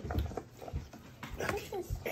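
Quiet, indistinct talk, with a few soft low thumps near the start.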